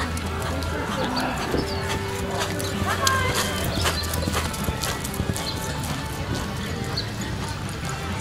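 Hoofbeats of a horse loping on arena dirt, with voices and music in the background.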